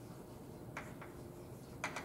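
Chalk tapping against a blackboard during writing: a few faint, sharp ticks, the loudest near the end.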